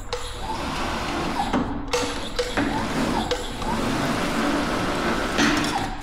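Sheet-metal slip roll rolling a sheet of stucco aluminium into a curve: a steady mechanical running noise with the sheet scraping through the rolls and a few sharp clicks of metal.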